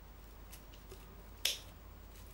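Small scissor blades of a folding EDC knife-scissors snipping through strands of cheap rope: one sharp snip about one and a half seconds in, with a couple of faint clicks before it.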